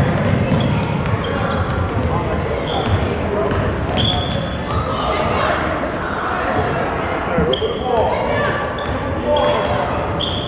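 Basketball being dribbled on a hardwood gym floor, with short high sneaker squeaks several times and indistinct shouting voices echoing through the gym.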